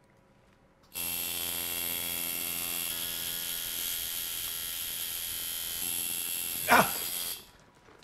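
Tattoo machine buzzing steadily, starting about a second in and stopping shortly before the end. Near the end a person lets out a short, loud yelp that falls in pitch.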